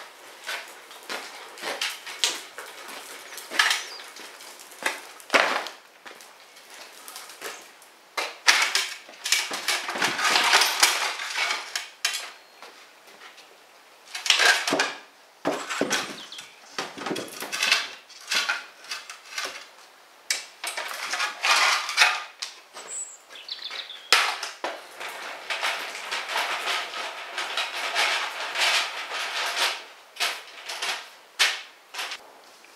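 Irregular knocks, clatter and scraping of a sack truck and ceramic plant pots being handled and shifted across a concrete floor, with longer scraping stretches around ten seconds in and again near the end.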